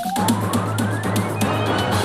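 Television news closing theme music cutting in abruptly: a synthesised tone sweeping steadily upward in pitch over about a second and a half, over a steady low drone and quick ticking beats.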